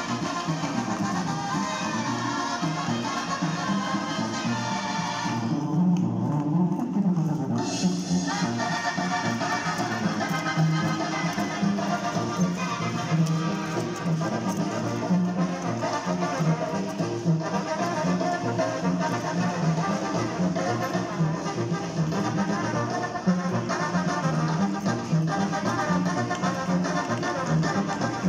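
Mexican banda music played on brass, with trumpets and trombones over a steady low beat. About six seconds in, the sound briefly goes muffled, losing its top end, then comes back clear.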